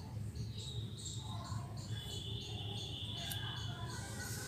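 Faint high-pitched insect chirping, repeated every fraction of a second with a thin held trill in the second half, over a steady low hum.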